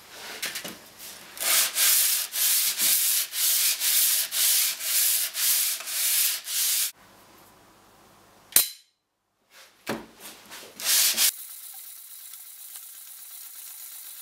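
Steel plane iron rubbed back and forth on abrasive paper laid flat on a board to flatten its back: a run of even scraping strokes, about two a second. About eight and a half seconds in there is one sharp metallic click as a magnet snaps onto the iron, then a few more strokes and a steadier, quieter rubbing.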